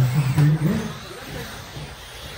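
Electric 17.5-turn brushless RC buggies racing on an indoor track, with a low voice over them in the first second.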